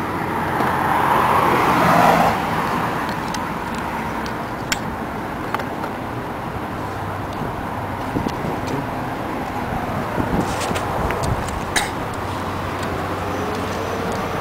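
Steady outdoor background noise with passing traffic, louder for the first two seconds or so. A few light clicks come from the headlight bulb and plastic housing being handled.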